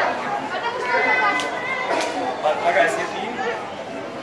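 Chatter of several children's voices, with a child calling out an answer to a riddle.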